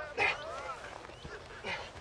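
Two short, strained vocal grunts of effort from a young man crawling on hands and feet under the weight of a teammate on his back: a louder one just after the start and a weaker one near the end.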